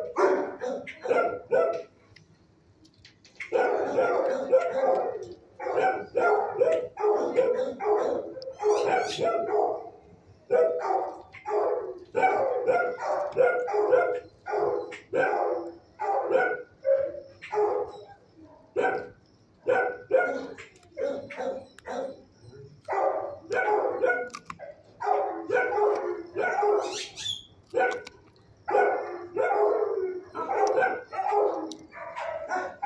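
Dogs in a shelter kennel barking over and over in quick runs, with a brief lull about two seconds in.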